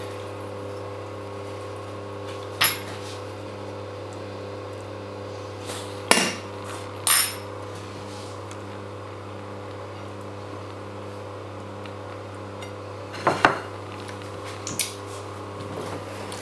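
A fork and plate clinking now and then as spaghetti is arranged on the plate: about five separate sharp clinks and knocks, over a steady low hum.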